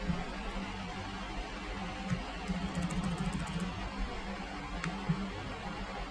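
Steady low hum and hiss of room tone from a desk microphone, with a quick run of faint clicks about two and a half seconds in.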